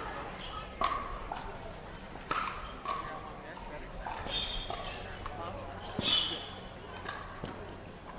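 Pickleball paddles striking a plastic ball back and forth in a rally: sharp hollow pops every second or two.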